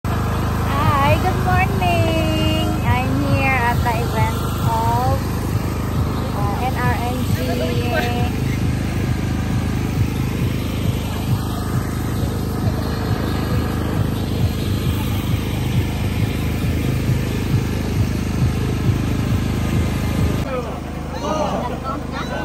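People's voices over a loud, steady low rumble; the rumble drops away near the end.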